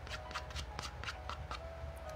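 A utensil scraping and clicking against the inside of a takeout cup of macaroni and cheese as food is scooped out, a quick irregular run of light clicks.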